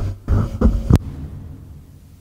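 Microphone handling noise: low thumps and rumbles as the mic is grabbed, ending about a second in with a sharp click as it is switched off, then a low hum that fades.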